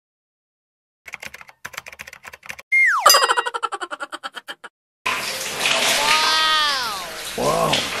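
Comedy sound effects: a quick run of sharp clicks, then a cartoon 'boing'-style falling glide with rapid pulsing, ending suddenly. About five seconds in, a shower starts running steadily on hair, with a voice gliding down in pitch over it.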